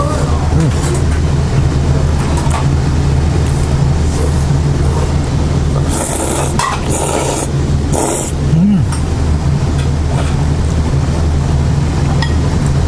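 Ramen noodles being slurped in two noisy bursts, about six and eight seconds in, over a steady low hum.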